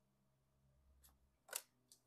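Near silence: room tone, with one brief faint rustle about one and a half seconds in.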